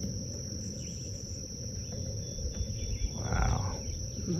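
Steady, high-pitched drone of insects in a summer meadow, with a low rumble of noise underneath and a brief louder rush of noise a little past three seconds in.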